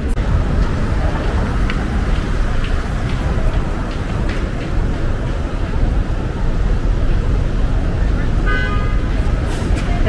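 Steady city street traffic noise from passing vehicles. A vehicle horn sounds briefly about eight and a half seconds in.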